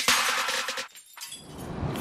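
A glass-shattering sound effect over intro music, fading away within about a second, with a faint swell building near the end.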